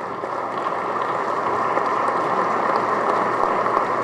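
Audience applauding: a steady clatter of many hands clapping that grows slightly louder.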